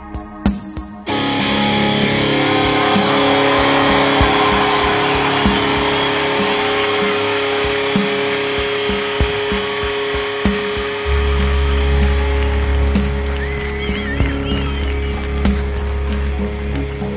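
Live band music: a drum-machine pattern ticking about twice a second under sustained synthesizer chords and guitar. A denser wash, with the audience clapping and cheering, comes in about a second in, and a deep bass enters near the end.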